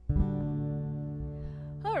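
Acoustic guitar: one chord strummed just after the start and left to ring, fading slowly.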